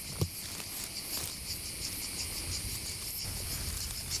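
Insects chirping steadily in a field, a fast even high pulsing, with a single short knock about a quarter second in.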